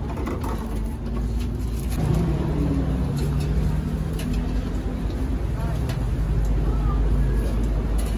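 Street noise: a steady low rumble of a motor vehicle engine, with a low steady hum coming in about two seconds in. People are talking in the background.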